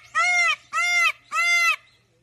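Male Indian peafowl calling: three loud calls in quick, even succession, each about half a second long and arching up then down in pitch.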